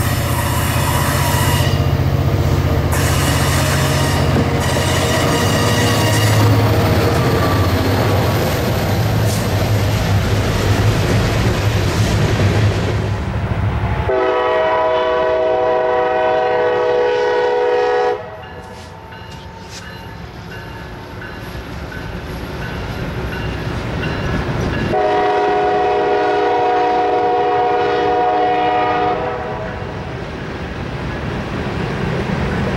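EMD SD40E3 diesel locomotive running close by with a heavy low rumble, wheel clatter and short horn blasts over the first half. After that the horn is heard farther off as a multi-note chord in two long blasts of about four seconds each, one near the middle and one near the end.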